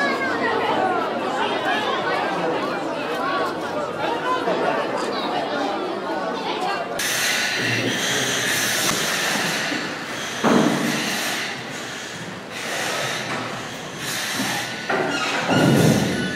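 Chatter of a crowd of children and adults for about the first seven seconds. It then gives way to repeated hissing from firefighters' breathing apparatus, coming and going every second or two, with a couple of dull thumps.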